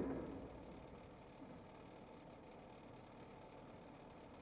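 Title music fading out over the first second, then a faint, steady background hum with no distinct events.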